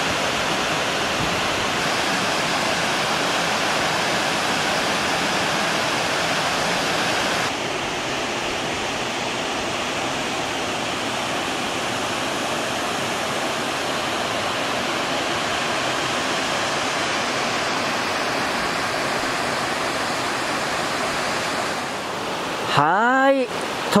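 Awamata Falls, a waterfall cascading down a sloping rock face into a pool, rushing steadily. The sound dips slightly about a third of the way in.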